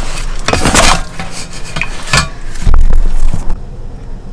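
Super noisy handling clatter and clinking, with a heavy low thump a little under three seconds in.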